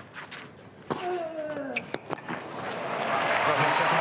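Tennis balls struck with rackets in a rally on a clay court, a few sharp hits in the first two seconds with crowd voices reacting. From about three seconds in, applause and cheering swell as the rally ends on the winning point.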